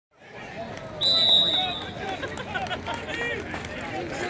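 A referee's whistle blows one short, steady, high blast about a second in, the loudest sound here, over a background of many voices from players and spectators, with a shout near the end.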